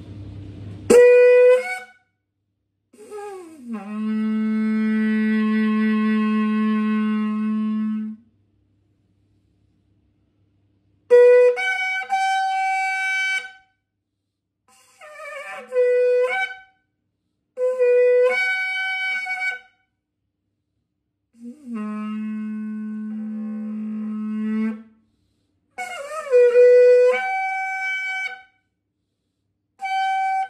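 Yemenite kudu horn shofar blown in a series of blasts across its three tones, low G, C and the G above it. Two long, steady low notes alternate with shorter calls that jump between the two higher notes.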